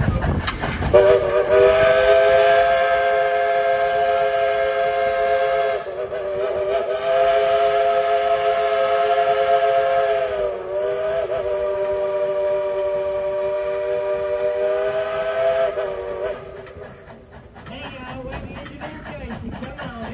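Steam whistle of coal-fired steam locomotive Dollywood Express #70, blown in three long blasts run almost together, each a steady chord of several notes. The whistle cuts off near the end, leaving a quieter low rumble of the train.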